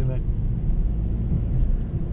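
Cabin noise of an Opel Astra driving and gently picking up speed: a steady low rumble of engine and road.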